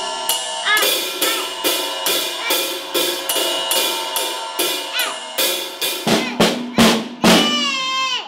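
Drum kit playing a slow, steady jazzy beat, about two to three hits a second, with cymbals ringing over it. Near the end it breaks into a short fill of heavier hits.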